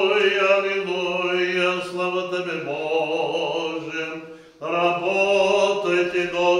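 A man's voice chanting Orthodox liturgical prayer in long held notes, with one brief pause for breath a little after four seconds in.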